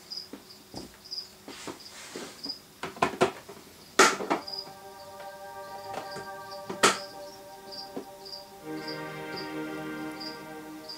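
Background music: a high chirp repeats about twice a second, and sustained chords come in about halfway and build near the end. A few sharp knocks sound, the loudest about four seconds in and again near seven seconds.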